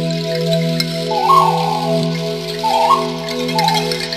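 Instrumental background music: steady sustained chords, with a short bright melodic flourish played three times over them.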